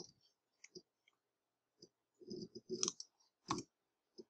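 Faint, scattered clicks of a computer keyboard and mouse, with the loudest click about three and a half seconds in.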